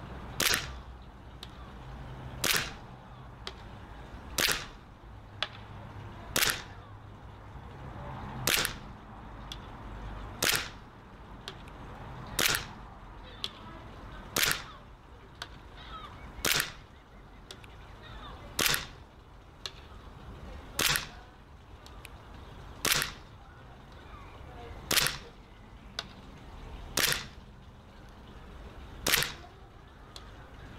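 WE G17 airsoft gas blowback pistol firing single shots at a steady pace, about one every two seconds, some fifteen sharp cracks in all.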